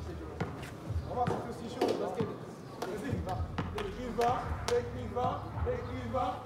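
A basketball bouncing on hard ground, a series of separate sharp thuds, with indistinct voices over it.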